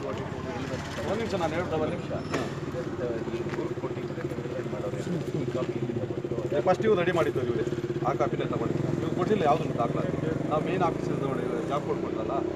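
Men talking in a group conversation, with a steady low hum underneath.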